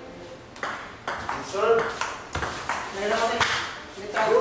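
Table tennis rally: a quick string of sharp clicks as the celluloid ball strikes the paddles and bounces on the table, about two hits a second, with onlookers' voices in the room.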